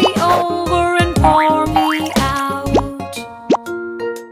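Cheerful children's music with cartoon sound effects: several quick pitch slides up and down in the first three seconds, then plainer held notes toward the end.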